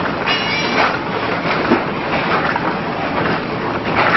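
Biscuit packing machine running: a loud, steady mechanical clatter with a repeating louder stroke, and a brief high whine about half a second in.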